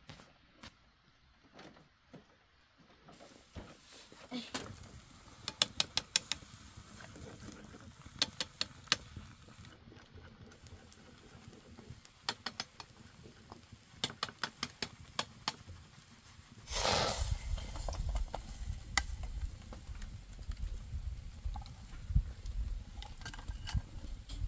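Cooking at an open wood fire: clusters of sharp clicks and taps, then a steady low rumble from about seventeen seconds in.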